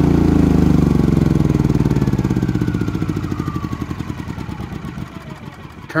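Champion 3500 watt inverter generator's small single-cylinder engine running down after being switched off: its firing slows and fades over about five seconds, with a faint falling whine, until it stops just before the end.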